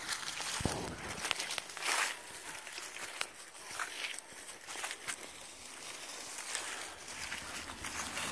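Irregular footsteps and rustling through grass and dry fallen leaves, with short crackles and a louder rustle about two seconds in, as a person walks with small puppies running alongside.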